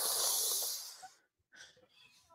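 A long breathy exhale, like a sigh, fading out about a second in.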